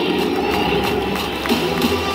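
Large baseball-stadium crowd cheering and shouting with music playing over the PA, a dense wash of many voices between lineup announcements.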